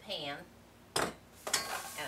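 Metal kitchenware clinking: a sharp clink about a second in, then a second knock half a second later, as a stainless steel mixing bowl and utensil are handled over the baking pan.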